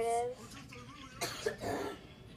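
A child coughing: two short, rough coughs a little over a second in.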